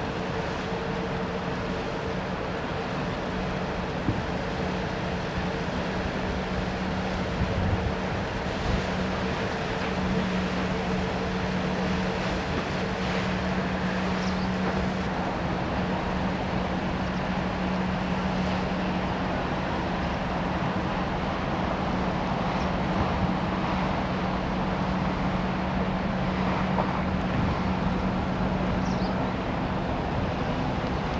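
Small ferry boat's inboard engine running steadily as the boat comes in, a low even hum over wind noise on the microphone; the hum drops away near the end.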